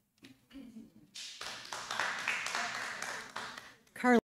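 Audience applause in a large room: a round of clapping that starts about a second in and dies away near the end.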